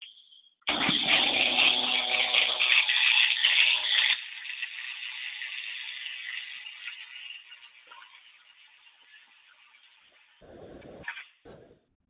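Pulsed MIG welding arc on stainless steel from a robot-held torch: a loud crackling buzz starting about a second in. After about four seconds it drops to a quieter hiss that fades away, with two short sounds near the end.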